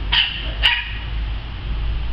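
Small dog giving two short, high-pitched yipping barks about half a second apart.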